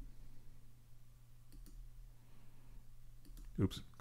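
A few faint clicks of a computer mouse as keyframes are selected and dragged in editing software, over a low steady hum.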